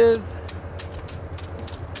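Faint, scattered clicks of oyster shell clusters being handled on a culling table, over the steady low hum of the oyster boat's engine.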